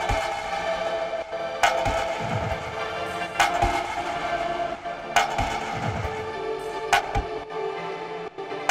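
Electronic beat playing with its drums run through a Raum reverb preset: a sharp hit about every second and three quarters, each with a reverb tail, over a held synth tone and low falling bass sweeps.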